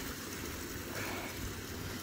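Steady rushing of a stream's running water, with a low rumble underneath.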